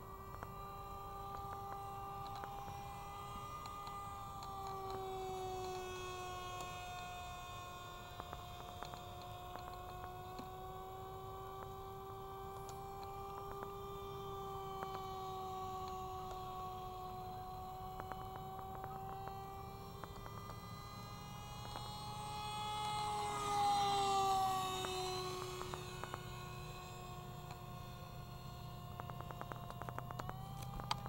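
RC Icon A5 model seaplane's electric motor and propeller whining steadily in flight, the pitch wavering slowly with throttle. About three-quarters of the way through it grows louder as the plane passes close, and its pitch drops as it goes by.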